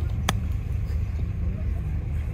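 A wedge striking a golf ball on a short approach shot: one crisp click about a third of a second in, over a steady low rumble.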